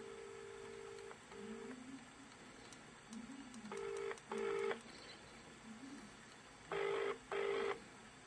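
British telephone ringing tone, the double 'ring-ring' a caller hears while the other phone rings, played through an iPhone's loudspeaker on an outgoing mobile call. Three double rings come about three seconds apart, and the last two are louder and buzzier.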